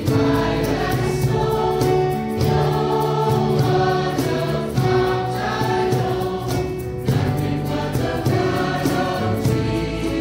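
A choir of voices singing a slow hymn, with long held notes.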